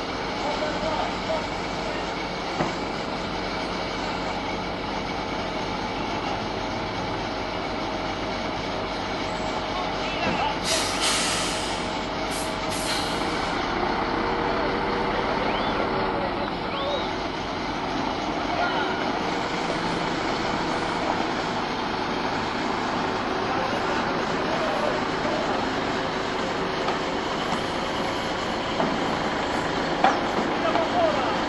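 Heavy diesel engine of a mobile crane running steadily under load as it hoists a steel footbridge off a lorry trailer. About eleven to thirteen seconds in come three short hisses of released air.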